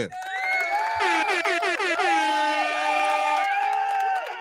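Loud horn sound effect: several overlapping held horn tones that step and bend in pitch, just after a short laugh.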